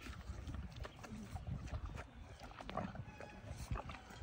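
A horse chewing and munching treats taken from a hand, with scattered short crunching clicks over a steady low rumble of wind on the microphone.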